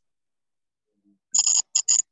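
Silence, then about one and a half seconds in, three short pulses of a shrill electronic tone come through a student's call audio as her line opens. The same tone carries on under her voice when she answers, which points to interference or distortion on her connection rather than a real ringing phone.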